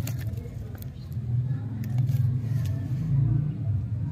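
Paper wrapper crinkling and tearing as it is peeled off a lollipop, in short crackles. Under it runs a steady low rumble that grows louder in the second half.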